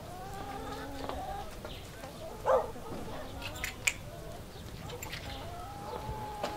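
Faint drawn-out animal calls in the background, with one short louder cry about two and a half seconds in and a few light clicks near four seconds.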